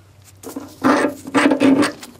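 Loud rattling and knocking as something is shaken by hand, starting about half a second in and running until near the end.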